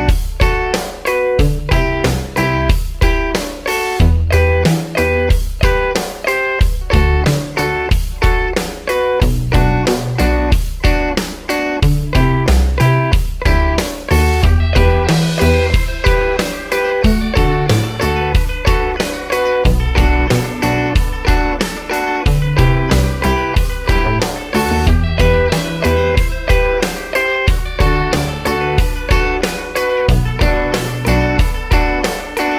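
Electric guitar playing a reggae-style offbeat part in an even rhythm: clipped chord stabs on the upper strings (Em, D, Bm, C) with muted scratch strokes between them. A bass line moves underneath.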